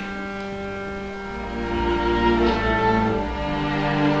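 String orchestra of violins, cellos and double bass playing slow, sustained chords. Low bass notes come in about a second and a half in, and the music swells a little.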